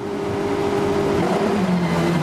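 Peugeot 208 rallycross car's engine heard from inside the cockpit, running hard on track. The note swells over the first half second, holds fairly steady, then dips briefly in pitch near the end.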